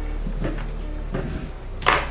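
A man chewing a bite of pork-rind-breaded fried chicken: a few short chewing and breathing noises, then a sharper, louder mouth or breath sound just before the end, over a low steady hum.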